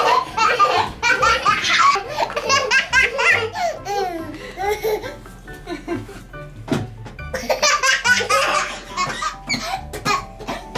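A toddler laughing hard in repeated bursts, loudest in the first two seconds and again near the end, over background music.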